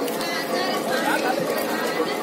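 Indistinct chatter of many people talking at once in a walking crowd, with no singing.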